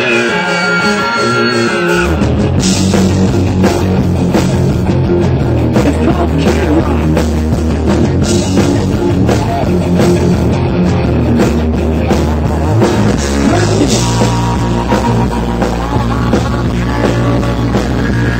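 Live rock band playing loudly with electric guitar, bass and drums. Sustained high guitar notes open, then the full band with heavy bass and drums comes in about two seconds in.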